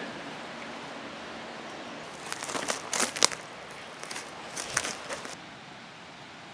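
Dry twigs and dead leaves crackling and snapping as someone moves through dry undergrowth: a run of sharp crackles starting about two seconds in and lasting about three seconds, over a steady faint hiss.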